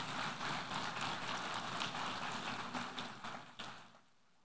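Audience applauding, a dense patter of many hands clapping that thins and dies away near the end.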